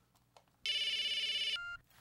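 A handheld phone rings: one electronic warbling ring about a second long in the middle, then a brief beep just before it is answered.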